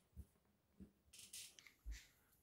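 Near silence: room tone with a few faint soft knocks and a brief faint hiss.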